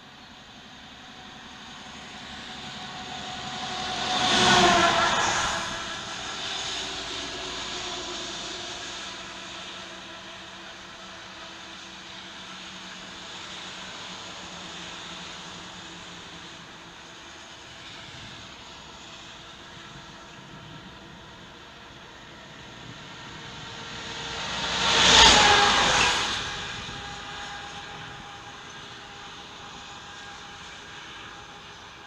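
Steady road noise of a car driving on a highway, with two vehicles passing close by, one about four seconds in and one about 25 seconds in, each swelling loud and fading with a falling pitch.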